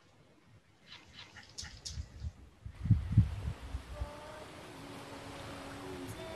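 Opening of the film's soundtrack: a few brief high sounds and two loud low thumps, then a steady hiss with soft music of held notes coming in about four seconds in.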